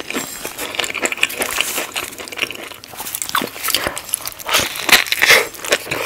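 Close-miked eating of a Whopper cheeseburger: the burger is handled and bitten, with wet chewing and many quick crackling mouth clicks. The loudest sounds come about five seconds in.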